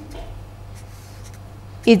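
Felt-tip marker writing on paper, faint scratching strokes, over a steady low hum.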